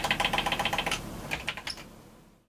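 Akai MPC3000 sampler playing a short pitched sample retriggered in a rapid stutter, about ten times a second, for about a second. A few scattered hits follow and fade out near the end.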